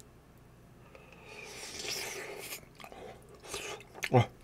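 Close-miked chewing of a mouthful of soft, cheesy lasagna: wet mouth and lip sounds that start about a second in, with a few small smacks near the end.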